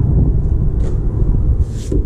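Low, fluctuating rumble of wind on the microphone, with a couple of brief rustles, one a little under a second in and one near the end.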